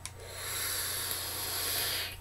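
Velocity clone rebuildable dripping atomizer on a Kooper Plus mod firing through a drag of about two seconds: the coil sizzling in the e-liquid with air hissing through the atomizer. It stops suddenly as the drag ends.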